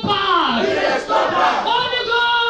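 A woman's voice shouting fervent prayer into a microphone, over a crowd of other voices praying aloud.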